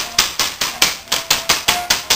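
A split-bamboo clatter stick cracking in a rapid series of sharp, even strikes, about five a second. This is the noise used to stir a puppy's drive in rag and bite play.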